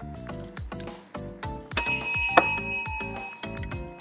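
Background music with a steady beat, over which a bright bell ding rings out a little under two seconds in and fades away over about a second.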